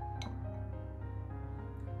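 Gentle instrumental background music: a slow melody of held notes changing from one to the next.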